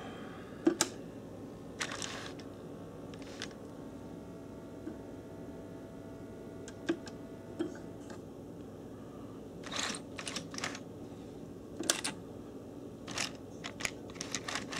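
HO-scale brass model steam locomotive running on track: a faint steady motor hum under irregular clicks and clatters, with a cluster of clicks near the end.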